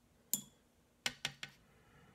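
Light tapping of a paintbrush and plastic watercolor paint set: one click, then three quick sharp clicks about a fifth of a second apart.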